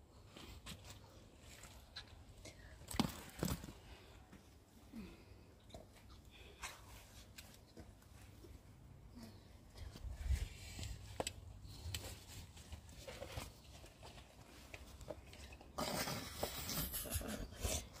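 Faint rustling of tomato plant leaves with scattered soft clicks and snaps as cherry tomatoes are picked off the vine by hand, and a longer burst of rustling near the end.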